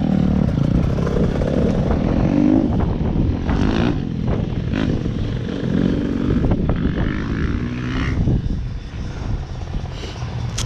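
A dirt bike engine running, its pitch rising and falling a few times as it is blipped, with a few sharp clicks and clatter on top.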